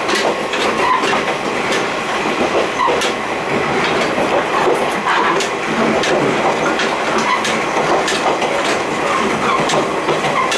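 Steel diamond-plate gangway plates between two coupled KiHa 28 and KiHa 52 diesel railcars rattling and clanking against each other as the train runs. Irregular sharp clanks sit over the steady running noise of the wheels on the rails.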